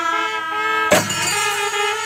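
Kerala Pandi melam temple ensemble playing: a held, horn-like wind-instrument tone sounds over the chenda drums, with one sharp stroke about a second in.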